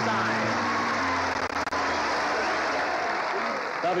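Studio audience applauding over band music. The music's held notes fade about halfway through, leaving the applause.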